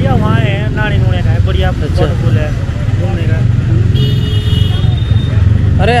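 Motorcycle engine idling steadily, with a brief high-pitched steady tone about two-thirds of the way through.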